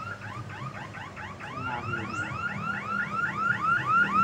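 Electronic siren warbling in quick rising-and-falling chirps, about four a second, growing louder as it approaches.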